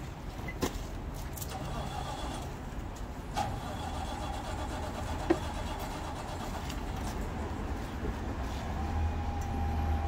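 A motor vehicle engine running nearby: a steady low rumble with a hum above it that comes in a few seconds in and gets louder near the end. A few sharp knocks sound over it.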